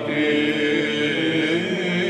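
Greek Byzantine chant sung by a male monastic choir, a slowly moving melody over a held low drone note.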